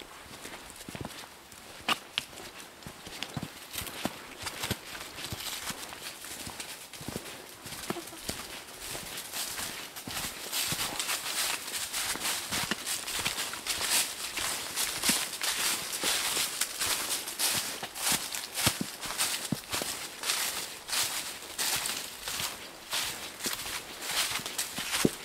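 Footsteps crunching through dry fallen leaves at a steady walking pace, louder and more crowded from about ten seconds in.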